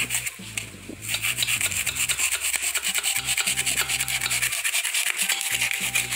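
A small kitchen knife sawing back and forth through a block of styrofoam (expanded polystyrene): rapid, even scraping strokes that start about a second in.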